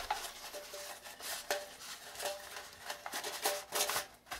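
Fabric of a stuff sack rustling and rubbing as a stainless-steel Bush Buddy wood stove is worked down into it, with repeated light scrapes and faint brief ringing from the metal.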